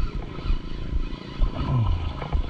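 Wind and handling rumble on a body-worn microphone while a spinning reel is worked against a hooked fish, with a man's short falling "oh" near the end.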